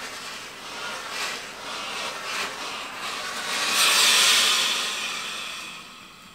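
Tefal Express Anti Calc steam generator iron sliding over fabric, then a hiss of steam that swells about three seconds in, peaks and fades away. The steam comes on with a delay after the steam button is pressed.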